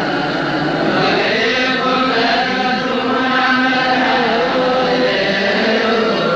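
Ethiopian Orthodox liturgical chant of the Mass: voices chanting on long held notes that waver slowly in pitch.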